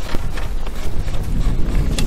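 Wind buffeting the microphone, a loud low rumble, with scattered small knocks over it.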